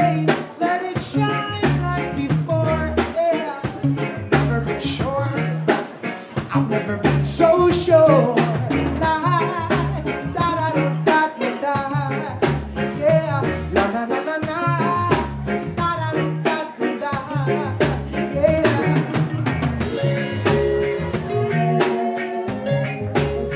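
Live reggae band playing a steady groove, with bass, drum kit, electric guitar, keyboard and bongos, and a man singing over it.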